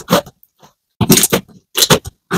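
Glossy slime being squeezed and kneaded by hand, giving clusters of short squishy, crackly pops: one burst right at the start, then two more bunches, about a second in and near the end.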